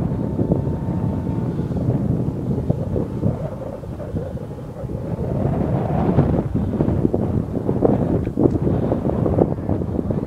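Wind buffeting the microphone in uneven gusts. A faint steady whine from the distant RC model airplane in flight is heard for the first second and a half.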